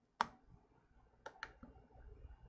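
A sharp click as a Lightning plug seats in an iPhone's charging port, followed about a second later by two faint clicks in quick succession.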